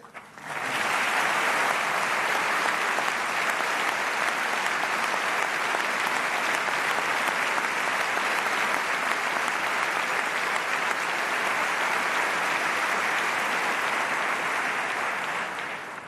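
Theatre audience applauding steadily, starting about half a second in and easing off near the end.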